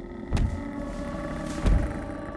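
Two heavy thuds about a second and a half apart, the footfalls of a large dragon stepping into view, over sustained notes of background score.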